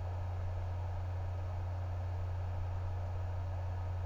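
Steady low hum with a faint even hiss, the room tone of the recording, without distinct scissor snips.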